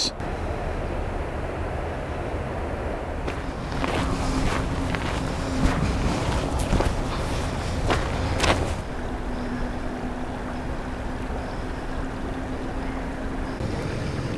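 Steady outdoor rumble with a faint, even engine hum in the distance. In the middle, for about five seconds, a series of footsteps crunching along the bank.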